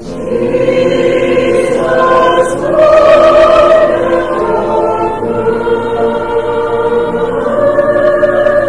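A congregation singing a slow hymn together, with long held notes.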